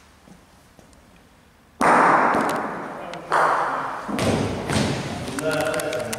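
Three sudden, loud thuds echoing in a large hall: the first about two seconds in, the others a second or so apart. Each fades out in the room. Men's voices follow near the end.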